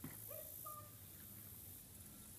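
A few faint, short animal calls in quick succession over a steady high hiss.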